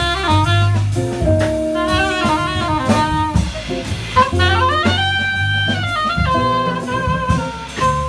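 Live jazz quartet playing: a soprano saxophone carries the melody over upright bass, archtop electric guitar and a drum kit with cymbals.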